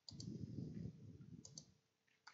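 Faint computer mouse clicks: a quick double click right at the start and another about a second and a half in, over a low rustling noise.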